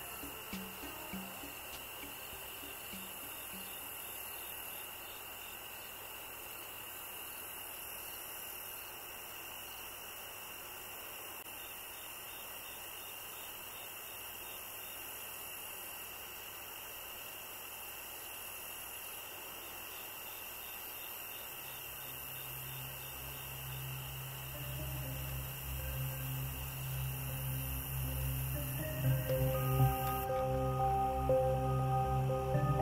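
Faint steady hiss. About two-thirds of the way in, a low ambient music drone comes in and keeps getting louder.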